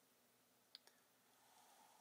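Near silence, with two faint clicks close together about three quarters of a second in: a gloved hand handling a titanium folding knife.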